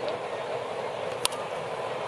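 Steady murmur of a ballpark crowd, with a single sharp crack about a second in as the pitch reaches home plate.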